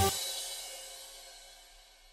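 A music track ending on a final drum hit and cymbal crash, the cymbal ringing out and fading away over about two seconds.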